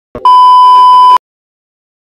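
A test-tone beep of the kind played over television colour bars: one loud, steady, high-pitched tone lasting about a second, cut off suddenly. A brief click comes just before it.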